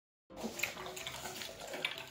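A litter of puppies eating from steel bowls: a busy run of wet lapping and smacking with small clicks, starting a moment in.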